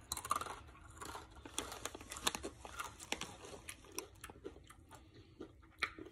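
A person chewing a crunchy Chex Mix rye chip: many quick, irregular crisp crunches.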